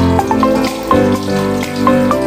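Water running from a kitchen tap into a sink, under background music of quick melodic notes.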